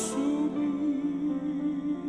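A man singing a slow song into a microphone, holding one long note with a slight waver over sustained instrumental accompaniment.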